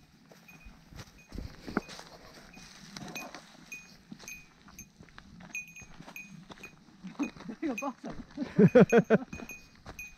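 Footsteps on a dry, leaf-strewn rocky trail, with a small bell on a hiker's pack pinging about twice a second in time with the walking. Near the end a few words give way to loud laughter that wavers up and down in pitch.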